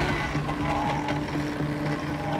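Hydraulic crab-pot block running, hauling the line up over its sheave with a steady low hum that breaks off and comes back a few times.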